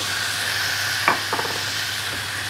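Beef steaks sizzling steadily in foaming garlic butter in a frying pan as another raw steak is laid in with a fork, with a short click about a second in.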